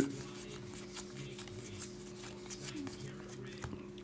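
Pokémon trading cards being thumbed through in the hands, one slid behind another, with soft, quick rustles and flicks of card on card. A steady low hum sits underneath.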